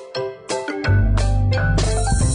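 Background music for the intro: a run of short chiming notes, with a deep bass coming in just under a second in and a fuller beat starting near the end.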